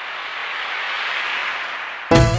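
A swell of hiss-like noise with no clear pitch, growing steadily louder: a riser sound effect building into the start of the song's music.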